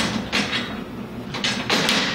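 Metal clattering and scraping as a linear actuator is taken off its mount and laid down along a metal rail. Three short clunks, the loudest near the end.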